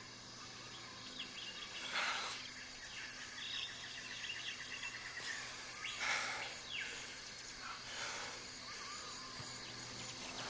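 Rainforest ambience: scattered bird chirps and calls, including a rapid trill, over a faint steady background, with soft rushing swells about two, six and eight seconds in.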